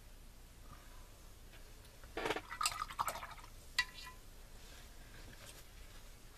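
Paintbrush rinsed in a glass jar of water: faint water sounds and a single sharp clink of the brush against the glass, ringing briefly, about four seconds in.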